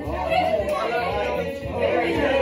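Several young people's voices talking and calling out over one another, with no single clear speaker.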